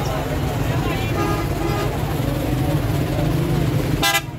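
Busy outdoor livestock-market din: a steady low vehicle-engine hum under a constant wash of noise, with scattered crowd voices faintly in the background.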